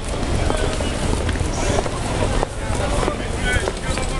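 Wind buffeting the microphone, a low steady rumble, with voices of people close by in a crowd.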